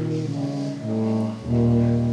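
Slow brass music, low held notes moving from one to the next about every half second, loudest just before the end.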